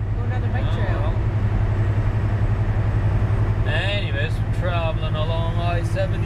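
Semi truck's diesel engine and tyre noise making a steady low drone inside the cab at highway speed, with a person's voice heard briefly a few times over it.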